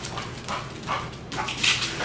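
A pit bull's paws and claws scuffing and scrabbling on a hard vinyl-tiled floor as she runs off down a hallway: a few short scuffs, then a louder, longer scrabble near the end.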